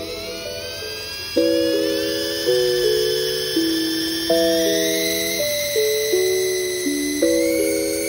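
Background music with piano-like chords changing about once a second, over the high whine of a small toy quadcopter's motors. The whine starts suddenly and climbs in pitch as the rotors spin up, stepping higher about halfway through and again near the end as the drone lifts off.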